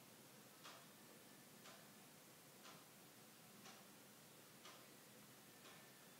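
Faint ticking of a clock, one tick about every second, over near-silent room tone.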